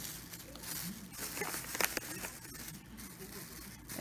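Plastic shopping bag rustling and crinkling as it is handled, with a few sharp crackles, one louder about two seconds in.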